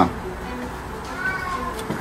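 A faint, drawn-out high-pitched call about a second in, lasting under a second, over steady background noise.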